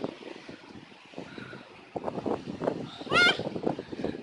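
Bare feet bouncing on an inflatable jumping pillow: a run of irregular dull thuds on the air-filled cushion, with a short high-pitched squeal about three seconds in, the loudest sound.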